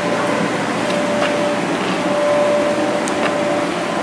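Steady whir of an electric air blower keeping an inflatable speed-pitch booth inflated, with a faint steady hum in it. A couple of light clicks sound about a second in and about three seconds in.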